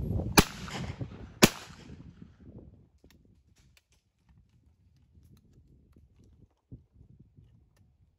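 Two shotgun shots from a 12-bore double-barrelled hammer gun, about a second apart, both barrels fired in quick succession. Faint clicks and a small knock follow as the gun is opened and reloaded.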